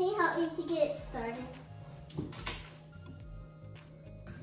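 A young child's high voice vocalizing briefly, without clear words, over quiet background music. A short sharp knock comes about two and a half seconds in.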